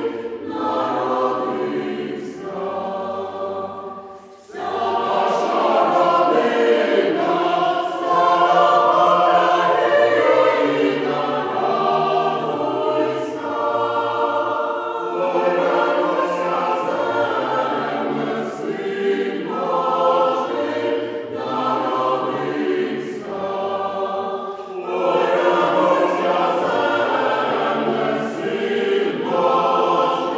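Choir singing a Ukrainian Christmas carol (koliadka), several voice parts together, with a short breath pause between phrases about four seconds in.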